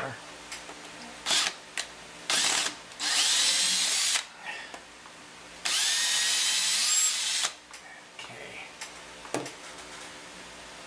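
Porter-Cable cordless drill/driver turning a screw in a sculpture's armature beneath the clay, run in three bursts: a brief one about two seconds in, then about a second long, then nearly two seconds long. Each burst starts with a rising whine as the motor spins up.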